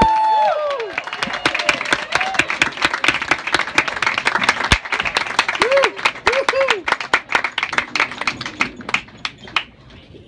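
A final held musical note cuts off about half a second in. A small audience then applauds, with a few voices calling out partway through, and the clapping thins out near the end.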